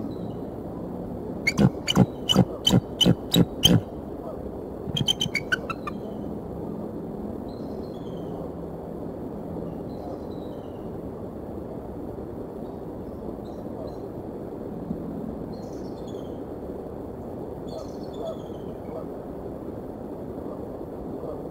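Bald eagle calling: about seven loud, sharp notes in quick succession, then a faster run of high notes that fall in pitch. Faint chirps from small birds follow over a steady background hiss.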